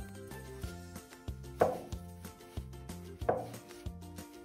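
Soft background music, with two sharp knocks about a second and a half apart as a cut-down screwdriver shaft is worked into a crocheted amigurumi doll to push in its fibre stuffing.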